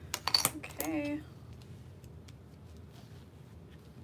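A quick flurry of sharp clicks and taps as plastic templates and vinyl pieces are handled on a cutting mat. About a second in comes a short hummed "mm" in a woman's voice.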